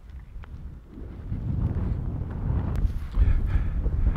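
Wind buffeting the microphone: a low, gusting rumble that builds about a second in and stays strong.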